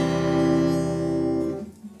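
Steel-string Yamaha acoustic guitar ringing out on one strummed open C major chord, fading away near the end.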